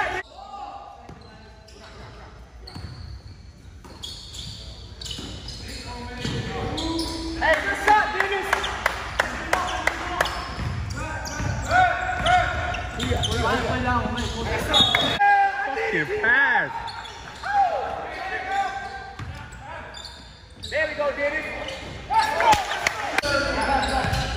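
Basketball bouncing on a hardwood gym floor during play, with players' shouts and voices echoing in the large hall. Quieter for the first few seconds, then busier.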